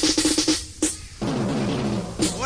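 Reggae sound system playback: a quick drum-roll burst, then a pitched tone that glides steadily downward in the second half.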